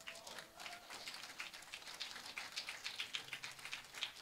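Faint, scattered hand-clapping from a small congregation, several irregular claps a second. The last note of an acoustic guitar dies away in the first second.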